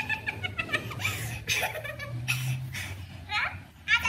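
High-pitched women's voices in short bursts of talk and giggling, with breathy laughter in the middle.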